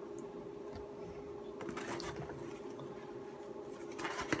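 Faint rustling and scraping of stiff art prints being handled and shuffled, a few soft scratches about halfway through and again near the end, over a steady low hum.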